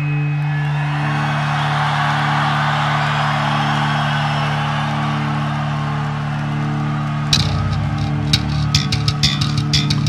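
Heavy rock music: a held guitar chord rings out for about seven seconds, then drums and bass guitar come back in with a steady beat.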